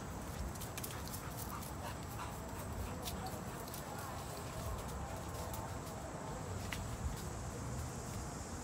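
Blue nose pit bull whining faintly, in short wavering whines that come twice, with light clicks and rustling throughout.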